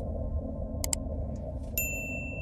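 Sound effects of an animated subscribe overlay: a quick double mouse-click about a second in, then near the end a bright electronic bell-like ping that rings on. A steady low rumble runs underneath.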